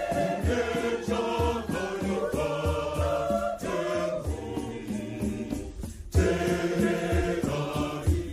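A large crowd singing a Shona Catholic hymn together in harmony, over a low steady beat about twice a second. The sound drops out briefly just before six seconds in.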